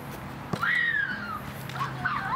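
A child's high-pitched call about half a second in, rising and then falling in pitch over nearly a second, followed near the end by shorter high calls.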